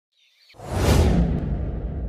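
A whoosh sound effect: a rush of noise with a deep rumble under it swells in about half a second in, peaks about a second in, then fades.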